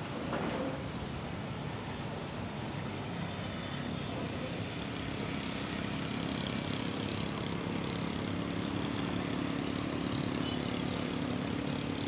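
Steady hum of distant motor traffic, with a faint low engine drone that comes in partway through and grows slightly louder.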